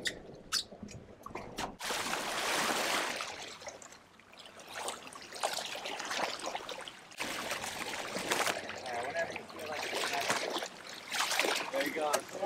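Seawater rushing and splashing as a tagged swordfish is held by its bill beside the boat and water is forced through its gills to revive it, swelling and easing in waves. A few sharp clicks come in the first couple of seconds.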